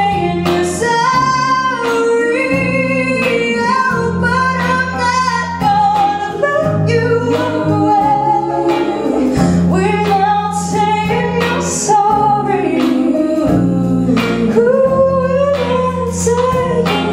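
Female vocalists singing a pop ballad into microphones with live band accompaniment, guitar and a sustained bass line under the voices.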